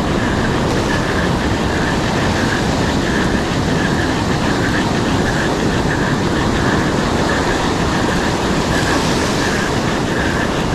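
Small surf washing up a sandy beach, mixed with wind buffeting the microphone: a steady, loud rushing noise.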